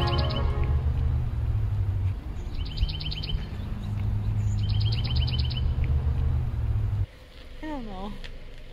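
A small bird singing a quick trill of about eight rapid high notes, repeated three times over a steady low rumble. The rumble cuts off suddenly about seven seconds in, and a person's voice is heard briefly near the end.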